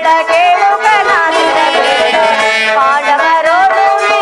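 Indian stage-drama music: an ornamented melody with sliding notes over a steady held drone note.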